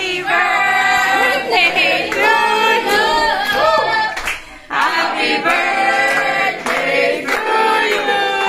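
A group of people singing together unaccompanied while clapping along, with a brief break in the singing about four and a half seconds in.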